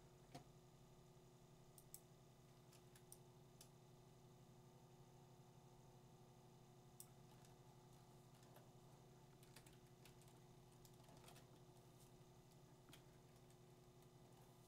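Near silence: faint computer mouse clicks and keyboard presses, scattered irregularly, over a low steady hum.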